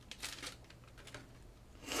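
Foil booster-pack wrapper crinkling in the hands as the torn pack is worked open and the cards are slid out, with a louder rustling swish near the end.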